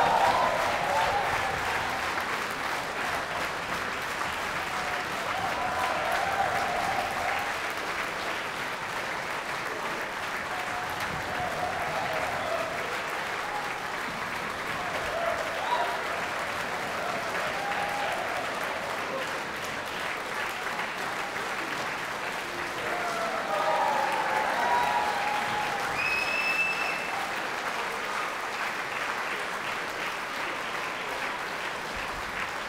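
Concert-hall audience applauding steadily after a symphony performance, with voices calling out above the clapping now and then. A brief high whistle sounds near the end.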